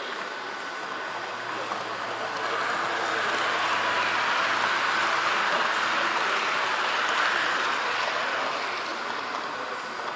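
An H0-scale model train passing on the adjacent track, its wheels rolling on the rails: a rolling rush that swells over a few seconds and then fades. Under it runs the steady running noise of the model train carrying the microphone.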